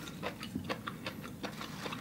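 Chewing close to the microphone: soft, irregular wet mouth clicks, several a second.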